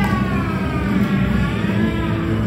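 Loud wrestler's entrance music over a hall sound system, with a high pitched sweep that slides down and then back up across the two seconds.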